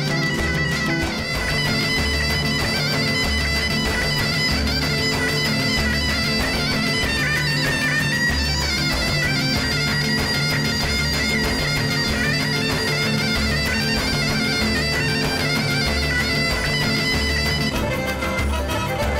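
Black Sea horon dance music with a droning, bagpipe-like reed lead held over a steady, evenly repeating beat.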